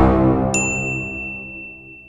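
Intro music fading out, with a single bright electronic ding about half a second in that rings on for nearly two seconds. The ding is the notification-bell chime of a subscribe-button animation.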